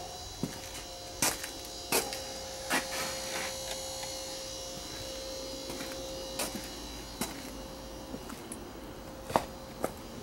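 A faint steady hum with a thin tone that fades out near the end, under scattered light knocks and clicks, some coming in runs about three-quarters of a second apart.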